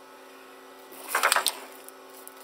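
Brief handling noise about a second in, a quick clatter of a few knocks and rustle as things on the desk are moved, over a steady low hum.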